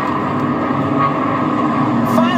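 NASCAR Xfinity Series stock cars' V8 engines running at speed as two cars race side by side, a steady droning engine note, heard through a television's speaker.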